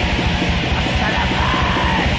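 Raw black metal recording: fast, dense drumming and distorted guitars under a harsh yelled vocal, with a wavering high line in the second half.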